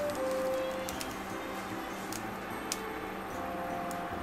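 Soft background music with a few held notes over the steady sizzle of a stuffed fried-tofu pouch frying in hot oil in a frying pan, with a few small sharp pops from the oil.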